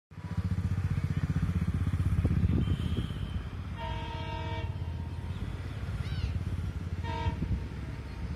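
ALCO diesel locomotive horn from an approaching train not yet in view: one blast just under a second long about four seconds in, then a short toot about seven seconds in. A steady low throbbing rumble runs underneath.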